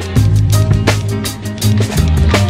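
Background instrumental hip-hop beat: a drum kit keeping a steady rhythm over a bass line.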